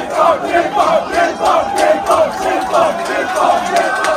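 A crowd of football fans shouting and chanting together in a loud, rhythmic celebration, with loud peaks two to three times a second.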